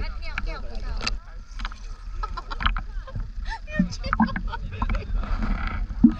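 Seawater sloshing and splashing around a camera held at the surface, with short splashy clicks over a steady low rumble of water and wind on the microphone.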